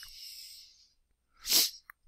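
A man's breath close to the microphone: a soft hiss trailing off in the first half second, then a short, sharp intake of breath about a second and a half in, and a small mouth click just before he speaks again.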